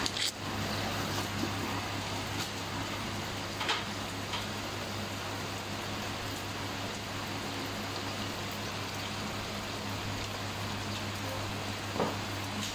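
Steady rain falling, an even hiss, with a couple of faint taps about four seconds in.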